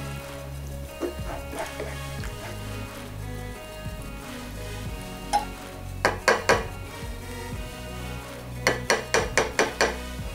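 A spatula stirring beans in tomato sauce and knocking against a metal frying pan, in quick runs of clicks: one a little after five seconds in, four close together about six seconds in, and about six more near the end.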